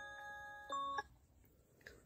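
Faint chime-like ringing tones fading away, with a second, brief higher tone a little before one second in. The sound then cuts off to dead silence.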